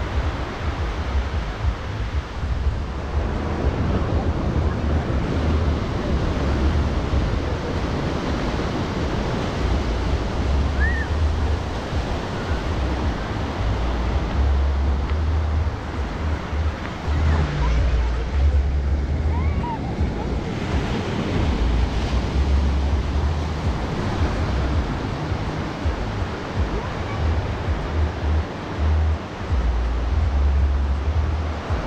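Small sea waves breaking and washing up the sand in a steady surf wash, with wind buffeting the microphone in an uneven low rumble.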